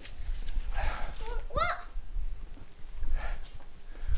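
A single short spoken exclamation, "what?", rising steeply in pitch about one and a half seconds in, over a faint low rumble.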